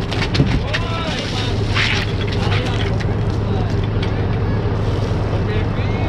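Engine of a portable fire pump running steadily at one pitch, with spectators shouting and cheering over it and a few short clanks.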